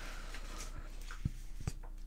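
Quiet room tone with a low steady hum and two or three faint small ticks, from hands moving the paper instruction sheet and hobby tools on a cutting mat.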